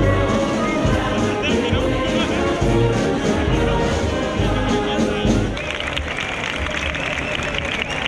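Brass band playing, with a steady beat, over a crowd. The music ends about five and a half seconds in, leaving crowd voices.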